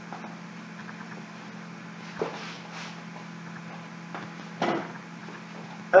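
Quiet room tone carrying a steady low hum, with two soft knocks, one about two seconds in and one a little before five seconds.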